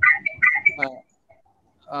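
A man speaking hesitantly over a video-call link. A thin, steady, whistle-like tone runs under his voice for about half a second near the start, then a short pause.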